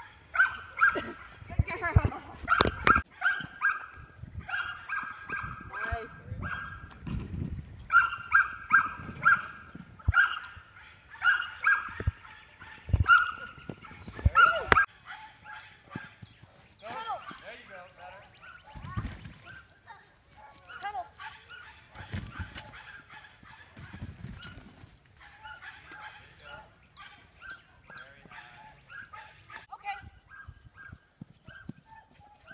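A dog barking and yipping over and over in quick, short calls, loud and frequent for the first half, then sparser and fainter.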